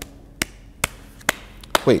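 One person slowly clapping: five single claps, a little over two a second.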